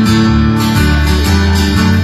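Acoustic guitars strumming over a bass guitar, the bass moving to a new note twice, in a short instrumental break of a live band's song.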